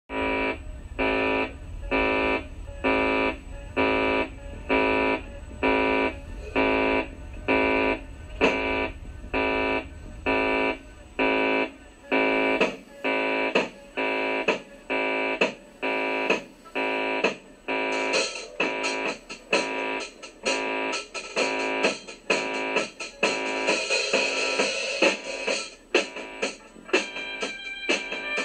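Rock band demo recording: an electric guitar strikes a chord about once a second over a low hum, then the playing quickens around halfway and grows busier and brighter toward the end.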